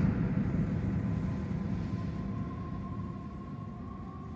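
A low rumbling drone that slowly fades, with a thin steady high tone coming in about a second and a half in and holding.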